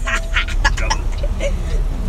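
A child laughing in a quick run of short bursts, with a steady low rumble of the truck underneath.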